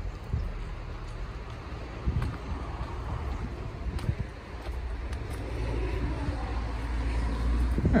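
A car going by, its engine and tyre rumble growing louder over the last few seconds.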